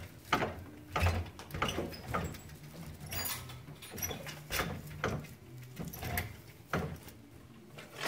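Old foot-operated broom-winding machine working as broom corn is wired tight onto a broom handle: irregular mechanical knocks and clatter, about one or two a second, over a faint low hum.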